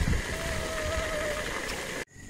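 Chicken deep-frying in a pot of hot oil, a steady sizzle, with a thin wavering whine lasting about a second near the start.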